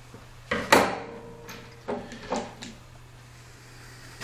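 Hand-work clatter: a sharp knock on a hard surface about three-quarters of a second in, with a short ring after it, then a few lighter knocks and clicks as the tool and parts are handled.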